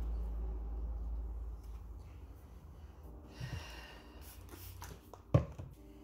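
A paper towel rustling and brushing over pothos leaves as they are wiped clean, over a low rumble at first. A short breath comes about halfway through, and a single sharp thump near the end.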